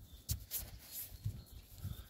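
Faint, irregular low thumps and rustles from footsteps on soft, wet ground and from handling of the camera, with a few short clicks.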